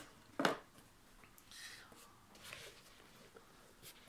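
Faint rustling of a leather sneaker being handled, turned over and its collar pulled open, with one short, sharp noise about half a second in.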